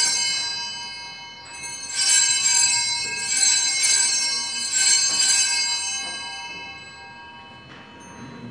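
Altar bells rung in several shakes at the elevation of the chalice, high bright ringing that fades out over the last few seconds. The ringing marks the consecration and elevation of the chalice at Mass.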